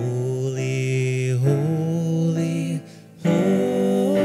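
Slow worship song: singing in long held phrases over keyboard accompaniment, with a short break between phrases about three seconds in.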